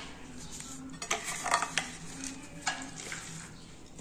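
Serving spoon scraping and clinking against the pot and plate while tuna salad is spooned onto tostadas: a few short, sharp clicks and scrapes about halfway through.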